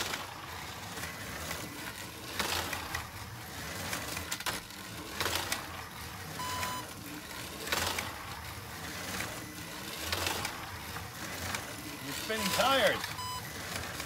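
A slot car lapping a Carrera oval track, passing close about every two and a half seconds. A short electronic beep from the lap counter sounds a couple of times.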